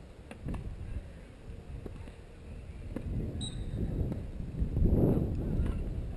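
Wind buffeting an outdoor microphone as a low, irregular rumble that builds to a strong gust about five seconds in and then eases. A couple of faint knocks come in the first second.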